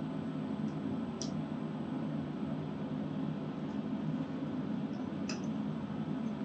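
Steady low room hum with a few faint, short ticks as the sensor bracket arm of a shaft alignment demonstration rig is turned by hand.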